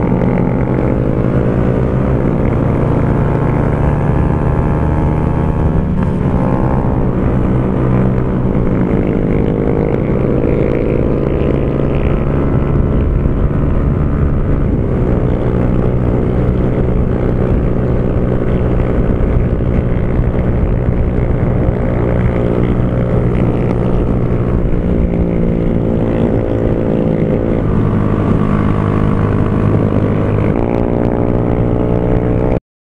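Honda CG Fan 150's single-cylinder four-stroke engine running under way through a Torbal Racing aftermarket exhaust. Its note dips and climbs again about six seconds in and shifts again near the end.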